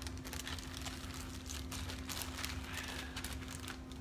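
A run of small clicks and rustles from jewelry and packaging being handled, over a steady low hum.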